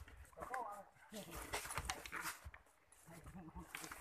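Soft, irregular footfalls and brushing of leaves as someone walks down a dirt forest trail, with a faint voice now and then.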